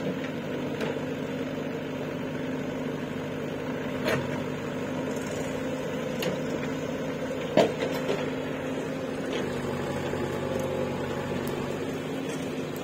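JCB 3DX backhoe loader's diesel engine running steadily at low revs, with a couple of short knocks about four and seven and a half seconds in.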